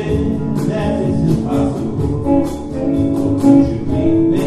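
Live band playing: electric guitar lines over drums and percussion, with regular beats.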